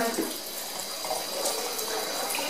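Tap running a steady stream of water into a sink.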